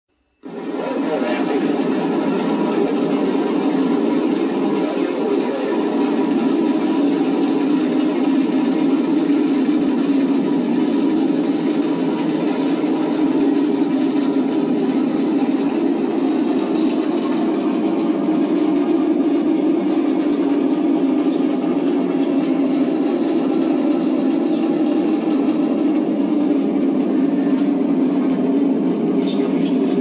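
Space-shuttle launch sound effect played from a 3D-printed Atlantis model's built-in speaker: a steady rocket-engine noise that cuts in about half a second in and holds level, thin with no deep bass.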